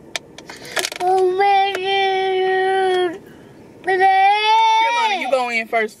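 A toddler's voice holding two long sung notes of about two seconds each; the second rises a little and then slides down at the end.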